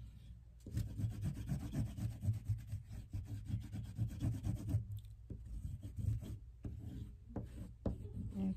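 Oil pastel pressed hard and rubbed back and forth on construction paper, coloring in an area: a fast run of short strokes for about four seconds, then slower, scattered strokes.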